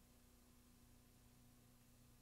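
Near silence: faint steady hiss with a low electrical hum from a blank stretch of videotape.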